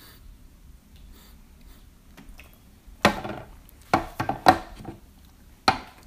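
Small porcelain tea cups and a glass pitcher handled on a wooden tea tray: quiet at first, then from about halfway through a few sharp clinks and knocks as cups are set down and moved.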